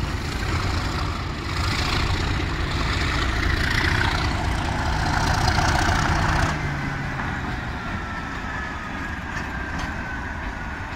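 Class 37 diesel-hauled test train departing: a heavy diesel engine rumble mixed with wheel noise from the passing coaches. It is loudest up to about six and a half seconds in, then falls to a quieter steady hum with a faint high whistle as the rear Class 37 locomotive comes by.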